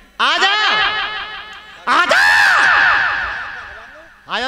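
A person laughing loudly through a stage microphone and PA, in two long bouts of repeated pulses, the second higher-pitched, each trailing off.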